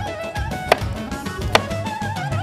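Background music playing steadily, with two sharp knocks about a second apart from a kitchen knife striking a wooden cutting board as a roasted red pepper is cut.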